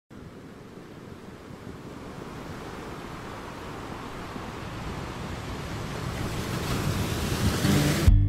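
Sea waves washing and surging, a steady rush of water noise that grows gradually louder throughout.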